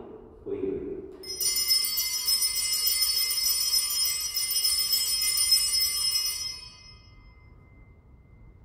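A cluster of altar bells (sanctus bells) shaken in a continuous jingling peal for about five seconds, rung at the elevation of the host during the consecration, then dying away. A man's voice is heard briefly just before the bells start.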